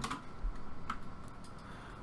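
A few faint, scattered clicks of a computer keyboard and mouse.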